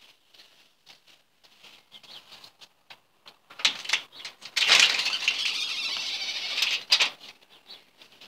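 A cabin door with a metal security screen door being opened: handle clicks and handling, then about two seconds of loud scraping as the door moves, and a sharp clunk about seven seconds in.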